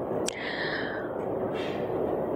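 A pause in a talk: soft breathing close to a headset microphone, with a small mouth click just after the start, over steady low room hiss.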